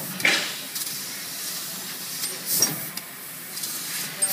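500 W fiber laser cutting 1 mm mild steel plate: short hissing bursts as the head pierces and cuts each hole, once near the start and again about two and a half seconds in, over a steady machine hum.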